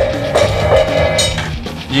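A gong struck once, hard, then left ringing and slowly dying away over about a second and a half.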